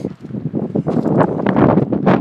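Footsteps crunching on loose volcanic cinder and gravel, in irregular bursts, with wind buffeting the microphone.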